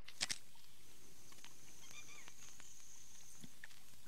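Quiet outdoor ambience with faint bird chirps and a faint, thin high steady tone through the middle. A quick double click about a quarter second in, a camera shutter firing.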